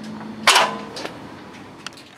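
Gorilla MPX aluminium multi-position ladder being worked by its yellow lock tab: a sharp metallic clack about half a second in, then a lighter click and a small tick near the end as the locking hinge releases and the section moves.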